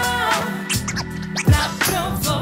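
Hip hop beat played live from a DJ's turntable setup, with turntable scratching over a wavering melodic line and a deep kick drum that hits about one and a half seconds in.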